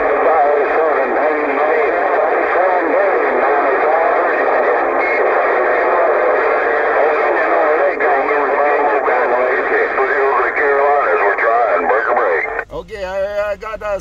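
Cobra CB radio's speaker carrying many stations transmitting at once: a dense, narrow-sounding jumble of overlapping voices with no gaps. It cuts off suddenly near the end, and a single voice follows.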